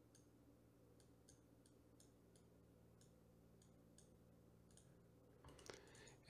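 Near silence: faint room hum with scattered, irregular computer mouse clicks.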